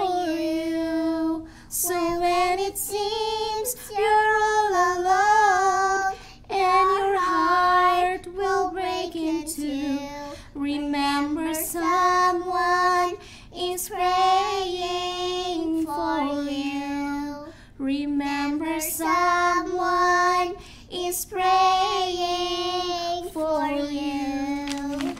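A young girl and a woman singing a gospel song together into microphones, in sung phrases of a few seconds with short breaks for breath.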